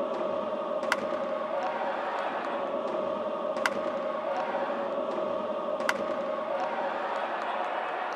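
Stadium crowd noise with a sustained group chant or cheer holding one note, which lifts briefly every couple of seconds. Three sharp cracks stand out: one about a second in, one past the middle and one near the end.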